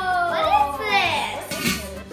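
Children's wordless exclamations, a drawn-out "ooh" falling in pitch, over background music with a steady beat.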